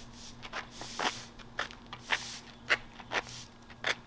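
Straw broom sweeping asphalt: short, brisk scratchy strokes, about two a second.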